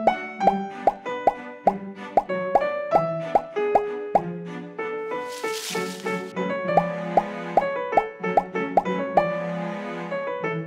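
Playful background music built on a bouncy run of short plopping notes that bend upward in pitch, about two and a half a second, over held tones, with a brief hiss about five and a half seconds in.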